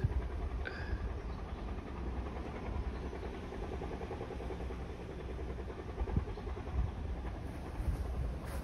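Steady low rumble of outdoor background noise, with a short high chirp about a second in and a brief thud near the six-second mark.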